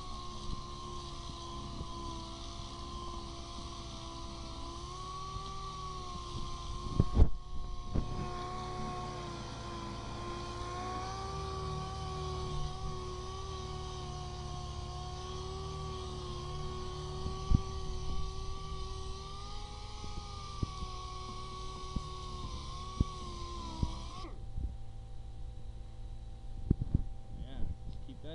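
Air-powered dual-action (DA) sander running against a brake rotor, scuffing off the surface rust. It is a steady whine whose pitch sags and recovers slightly as the pad is pressed on. It breaks off briefly with a knock about seven seconds in, and a few clunks come through before it stops shortly before the end.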